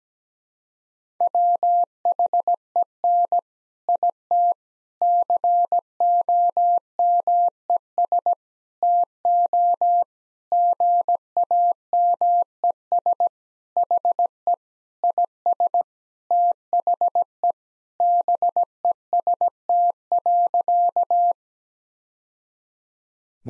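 Morse code sent at 17 words per minute as a single mid-pitched tone keyed in short and long elements, spelling out the sentence "When it comes to games he is the best." It starts about a second in and stops about a second before the end.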